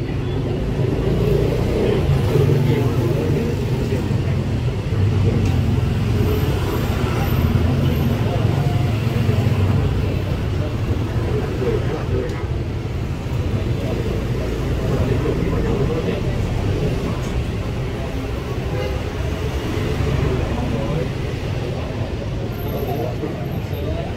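Steady road-traffic noise with indistinct voices mixed in.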